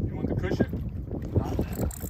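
Wind rumbling on the microphone on an open boat, a steady low buffeting, with faint muffled voices in the middle.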